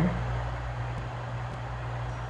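Steady low background hum of room noise, with one faint click about a second in.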